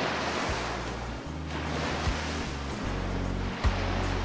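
Rushing ocean-surf sound effect that thins out over a music bed, with a deep bass line coming in about half a second in and a few sharp drum hits.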